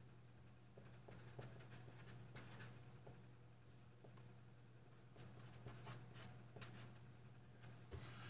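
Faint scratching of a pen or pencil writing, in spells about a second in and again from about five seconds, over a steady low hum.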